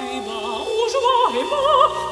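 An alto voice singing a slow, wide-vibrato line that climbs and falls, over sustained tones from a small chamber ensemble of seven instruments.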